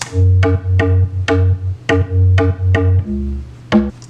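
Deep house pluck bass synth playing a bouncy pattern of about ten short, sharply plucked notes over a strong low bass, dropping to a lower note about three seconds in.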